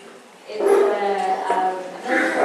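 A woman singing solo into a microphone through a PA, holding long notes. The phrase starts about half a second in after a short lull, over a steady low electrical hum.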